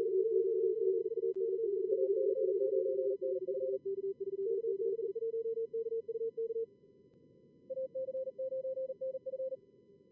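Simulated CW pileup from SkookumLogger practice mode: several callers sending Morse code at about 38 words per minute on slightly different pitches, overlapping each other, over a bed of narrow-band receiver hiss. The callers stop about seven seconds in, and one higher-pitched station sends again near the end.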